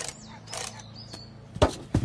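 Small clicks as a wind-up alarm clock's timer is set, then two sharp knocks near the end as the metal can it is strapped to is put down on the ground.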